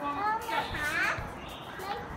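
A young child's high-pitched voice making sounds without clear words, loudest around the middle.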